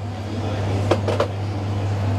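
A steady low hum under a soft rustling hiss, with two light clicks about a second in.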